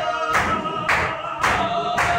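A group of men chanting a Sufi zikr in unison on held notes, with hand claps keeping a steady beat about twice a second.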